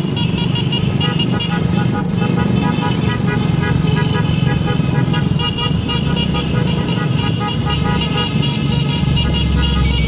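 Motorcycle engines of a riding convoy running steadily, with many horns beeping in short, repeated toots.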